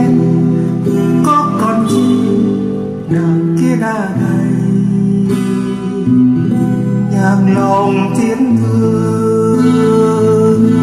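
Music: acoustic guitar accompanying a sung song, the voice holding long wordless or drawn-out notes over the guitar.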